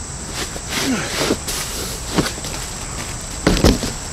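Cardboard shipping box being slid off a plastic-wrapped patio umbrella: irregular rustling and scraping of cardboard, with the loudest knocks and scrapes a little before the end.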